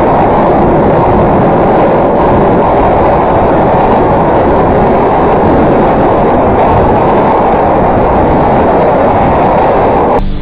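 Loud, unbroken wall of harsh distorted noise, heaviest in the low and middle range, with no clear pitch or rhythm.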